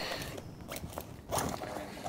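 A few short crunches and knocks, the loudest just past halfway, like handling or stepping sounds.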